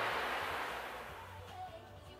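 Hands gathering and twisting long hair into a bun make a soft rustling hiss that fades over the first second and a half, over quiet background music.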